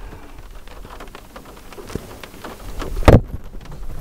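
Light rain: scattered raindrops ticking over a steady hiss, with one loud knock about three seconds in.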